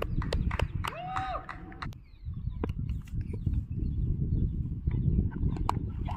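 Low, rumbling wind noise buffeting an outdoor microphone, with one short shout from a spectator about a second in and a few faint clicks.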